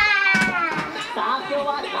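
Young girls' voices at play: a loud high-pitched squeal that slides down in pitch right at the start, followed by excited childish chatter.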